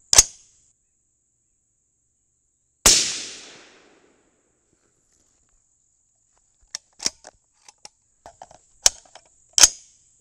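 A single rifle shot from an AR-15-pattern rifle chambered in 22 Nosler, about three seconds in, ringing out and dying away over about a second. Sharp metallic clicks of the rifle being loaded and handled come near the start and again through the last few seconds, the loudest near the end.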